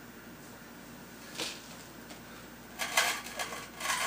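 After a couple of seconds of quiet, a few short metallic scrapes and grinds near the end: a screwdriver turned with a wrench on its square shank, working a stuck screw loose.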